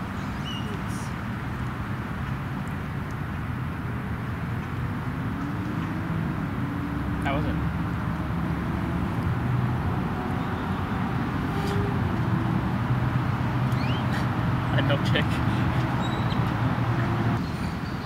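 Outdoor ambience of steady road-traffic hum, with voices talking indistinctly in the background. The traffic grows louder from about seven seconds in and eases shortly before the end.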